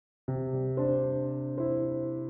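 Background music on electric piano, starting abruptly about a quarter second in after silence, with the chord changing twice.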